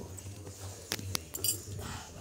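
A few light metallic clinks, the clearest about a second and a half in with a brief high ringing, over a faint steady low hum.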